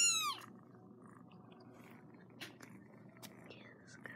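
A young orange tabby kitten giving one loud, high-pitched meow, its pitch rising and then falling over about half a second. A few faint clicks follow later.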